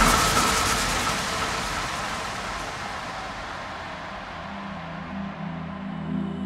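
EDM mix transition: the beat cuts out, leaving a white-noise sweep that fades and grows duller as its high end closes down. A soft, low synth pad comes in about four seconds in.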